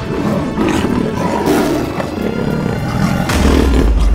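Big-cat roaring and growling, a lion and a tiger, over background music, with two louder surges and a heavy low rumble coming in near the end.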